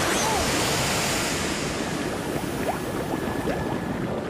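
Heavy water splash as a locomotive ploughs into deep floodwater over the track, then steady rushing and sloshing water that eases off slightly.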